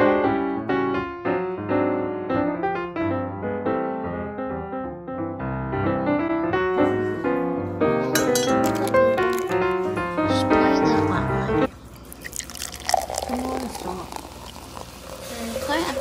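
Piano background music that cuts off abruptly about twelve seconds in. A quieter stretch follows, with hot water poured from a kettle into a glass pitcher and a woman's voice near the end.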